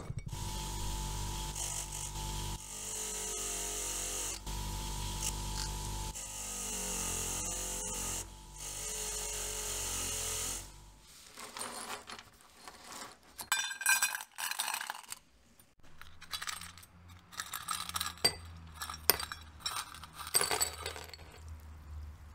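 A newly fitted ball bearing in an aluminium engine crankcase cover is spun by hand and runs with a steady whirr. It dips twice, slowing with a falling pitch before it is spun again. About halfway through it stops, and scattered clinks and clicks of small metal parts follow.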